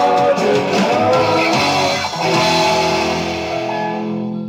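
Rock band playing an instrumental passage led by guitar, with bass underneath. About halfway through it settles onto a chord that rings on and begins to die away near the end, as the song winds down.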